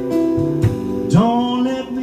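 Live band playing a slow pop-jazz song, with keyboard and guitar holding chords. About a second in, a male singer slides up into a long held note.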